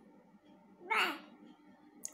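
A baby's single short vocal squeal about a second in, rising and then falling in pitch.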